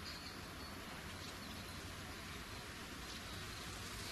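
Faint, steady outdoor background noise: an even hiss with a thin high tone running through it.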